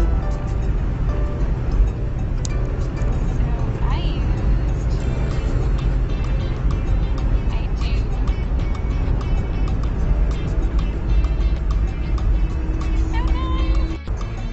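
Steady low rumble of road and engine noise inside a moving car's cabin, with music playing over it.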